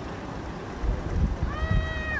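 A single drawn-out, high call, arching slightly in pitch and falling away at its end, starting about one and a half seconds in, over a low irregular rumble.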